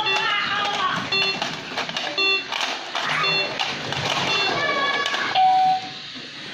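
Electronic toy hotpot game beeping about once a second as its LED display counts down from five, ending in a longer, louder beep at zero.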